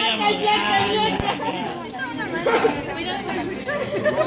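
Several people talking and chattering at once, their voices overlapping, with a single sharp click about a second in.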